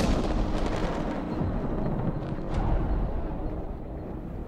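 Film sound effects: the tail of a sudden whooshing burst at the very start, then a deep, steady rumble with a brief swish about two and a half seconds in.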